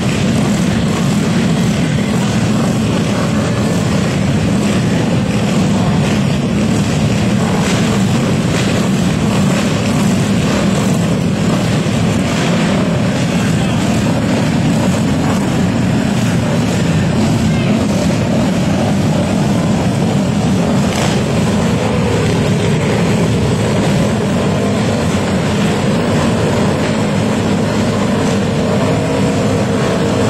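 Several flat-track racing motorcycle engines running hard as they lap the track, a loud, continuous drone whose pitch wavers as riders throttle on and off.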